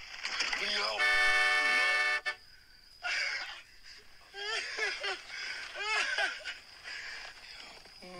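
Voices speaking, broken by a loud, steady, horn-like tone that starts about a second in and lasts just over a second.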